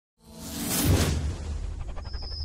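Intro-sting sound effect: a whoosh that swells up to a peak about a second in, then settles into a low, steady bass rumble.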